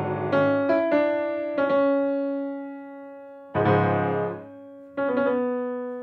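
Steinway & Sons grand piano played slowly: single notes and chords struck and left to ring and fade, with the loudest chord about three and a half seconds in. The piano is freshly delivered and not yet settled in the room, and the player says it is still somewhat out of tune.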